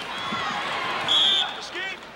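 Arena crowd noise, with a short, high whistle blast a little past a second in and a brief shout from the crowd near the end.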